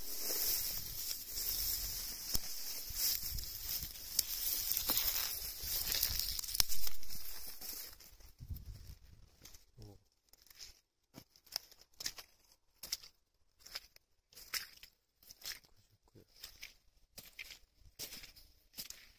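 Dense rustling and brushing of dry vegetation close to the microphone for about eight seconds, then a run of separate footsteps crunching through dry plants and ground litter, roughly one a second.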